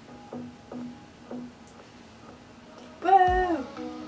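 Soft background music of plucked guitar notes. About three seconds in, a short, loud voice sound, held briefly and then falling away.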